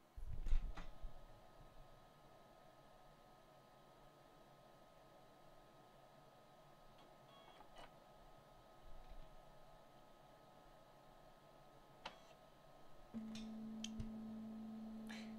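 Nimble nail-painting robot booting up, its internal fan running with a faint, consistent hum like a computer fan under load. A few low knocks come in the first second, and a steady low tone begins about thirteen seconds in.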